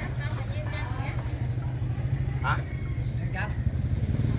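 A small engine idling: a steady, low drone with a fast, even pulse. Faint voices talk over it.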